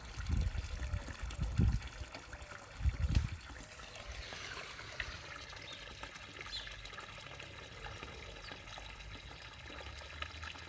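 Steady faint trickle of water in a garden pond, with irregular low thumps on the microphone during the first three seconds or so.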